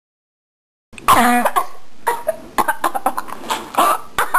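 Silence, then about a second in a person's voice close to the microphone: a falling vocal sound, followed by short, sharp, cough-like bursts and clicks.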